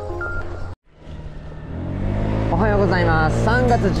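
Intro music with a short run of stepped, chime-like notes, cut off abruptly under a second in. After a brief silence, a steady low vehicle hum from riding along a street builds up, with a voice coming in over it near the end.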